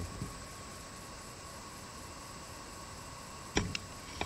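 Steady faint outdoor hiss with a thin steady high tone, then near the end a sharp knock followed by two light clicks from the horse float.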